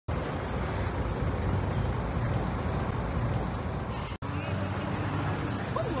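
Steady city road traffic: the hum of car engines and tyres. It cuts off abruptly about four seconds in and picks up again as similar street traffic noise, with a brief voice near the end.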